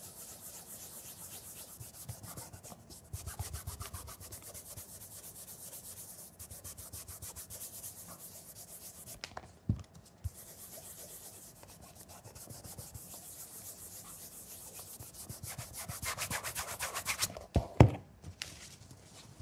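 Cotton cloth wrapped over the fingers rubbing leather-cleaner over a leather shoe in quick back-and-forth strokes, stripping old cream and wax. The rubbing stops briefly with a knock about nine seconds in, and grows louder near the end before a thump.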